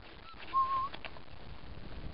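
One short, high whistle-like tone about half a second in, over steady outdoor background noise.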